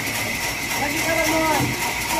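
Large sawmill band saw running: a steady high tone over a dense, even hiss, as a squared jackfruit log is pushed up to the blade.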